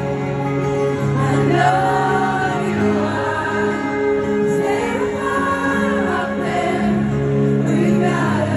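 Live concert ballad: singing over electric guitar, amplified through a stadium sound system.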